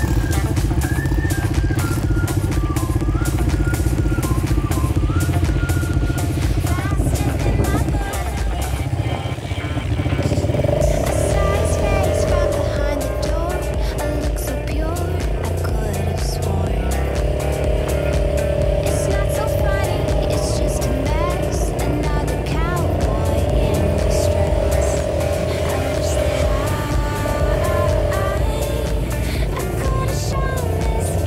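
Small Suzuki quad bike's engine running as it is ridden over sand, its note rising and falling with the throttle.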